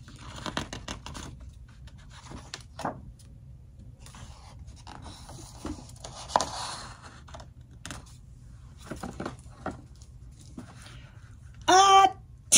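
Soft paper rustling, scrapes and small clicks as a picture-book page is turned and the book is handled. A voice begins near the end.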